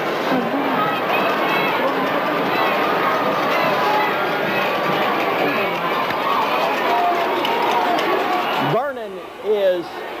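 Football stadium crowd, many voices shouting and chattering at once. Near the end the crowd noise drops away suddenly, leaving a single voice.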